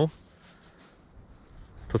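A man's voice breaks off at the start and resumes near the end; between, a pause of faint, steady outdoor background noise.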